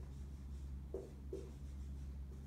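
Dry-erase marker writing on a whiteboard: short strokes that squeak briefly, twice about a second in, with faint scratchy hiss between, over a steady low hum.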